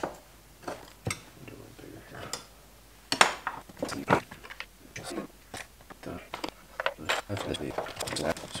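Scattered clicks and knocks of hard plastic and metal as a Stihl 180C chainsaw is handled while its replacement handle is fitted, the sharpest knocks a little after three seconds and around four seconds.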